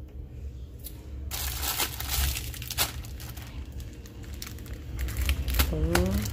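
Plastic grocery packets rustling and crinkling as they are handled, with sharp crackles, starting about a second in; at the end a hand is picking up a plastic-wrapped pack of Sazón seasoning.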